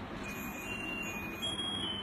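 Tinny electronic chime tune: a few thin, high notes, held and overlapping, starting just after the start.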